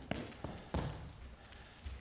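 Dancers' footsteps running and landing on a studio floor: a handful of soft thuds and scuffs, the loudest about three-quarters of a second in.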